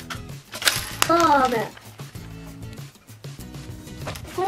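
Catch the Fox plastic toy popping its spring-loaded pants, a short burst of noise and a sharp snap about a second in as the small plastic chickens fly out. Background music and a child's voice go on over it.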